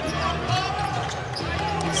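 Live basketball game sound in a large indoor arena: a ball being dribbled on the hardwood court, over a steady low hum, with a faint voice in the background.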